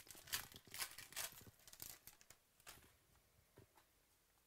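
Foil wrapper of a 2018 Panini Prizm football card pack torn open and crinkled by hand: a run of short, faint rips and rustles that stops about three seconds in.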